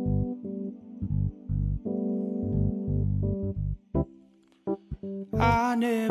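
Electric keyboard playing a slow, sustained chordal intro with deep bass notes, easing off briefly about four seconds in. A man's singing voice comes in near the end.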